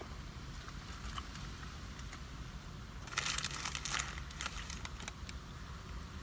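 Sandwich wrapper crinkling as it is unwrapped, with a dense burst of rustling about three seconds in, over a low steady rumble.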